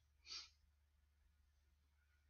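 A short breath out, a brief hiss, at about a third of a second in, then near silence with only a low steady hum.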